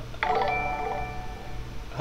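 Live-stream donation alert sound: a short chime-like jingle of held tones that starts sharply about a quarter second in and plays until speech returns.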